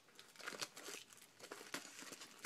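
Clear plastic wrapper on a pack of scrapbooking cards crinkling in a run of short, irregular rustles as it is pulled open by hand.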